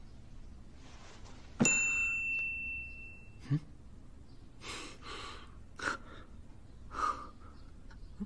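A single clear ding about a second and a half in, ringing out and fading over a second or so. It is followed by a soft low knock and then a few short breaths or sighs from a man.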